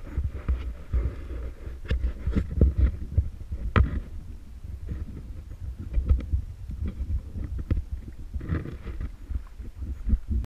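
Muffled low rumble broken by irregular knocks and short splashes, as choppy sea water slaps against a camera held just above the surface.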